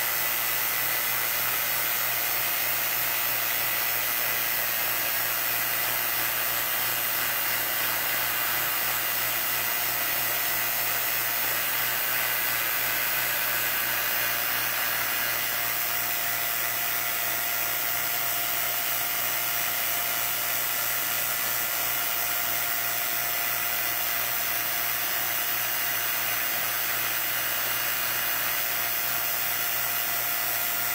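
Vacuum pump running steadily, pulling a vacuum on a chamber to degas freshly mixed Alumilite resin. Its tone shifts slightly about halfway through.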